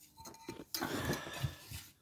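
Handling noise from a phone being moved around while it records: faint rubbing and scraping, with a sharper click about two-thirds of a second in.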